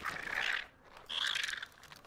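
Two short, harsh screeching calls from a birdlike film creature, each about half a second long, the second pitched higher than the first.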